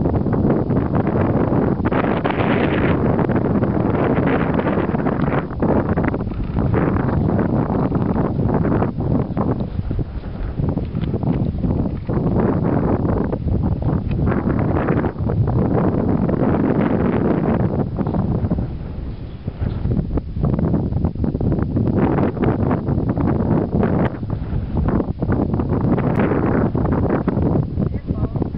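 Wind buffeting the microphone: a loud, gusty rush of noise that swells and eases every second or two, with a brief lull about two-thirds of the way through.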